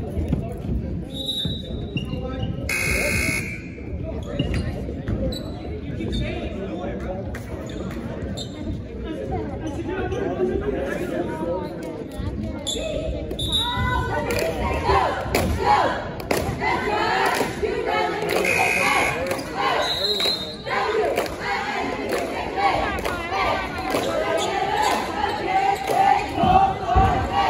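Gymnasium sound during a stoppage in a basketball game: a basketball bouncing on the hardwood court, voices echoing in the hall, and a gym buzzer sounding briefly a few seconds in.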